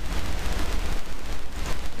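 Steady loud background hiss with a low hum underneath, with no distinct event standing out.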